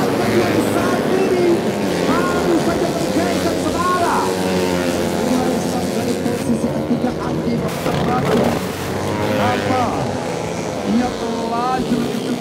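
Several four-stroke 130 cc underbone race motorcycles running hard through the corners, their engines rising and falling in pitch as they rev and pass.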